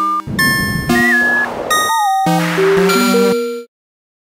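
Synthesized electronic tones from the Artikulator iPad app playing back a drawn piece: a string of short pitched, chime-like notes that step and glide in pitch, mixed with brief noisy bursts, cutting off suddenly near the end.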